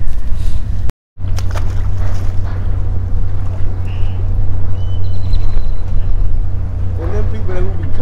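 Wind rumbling over the microphone of a body-worn camera, a heavy low rumble that rises and falls in gusts, cut off briefly about a second in.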